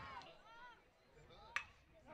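Faint crowd voices, then a single sharp crack of a metal baseball bat striking a pitched ball about one and a half seconds in.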